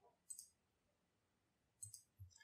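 Two faint computer mouse clicks about a second and a half apart, in near silence.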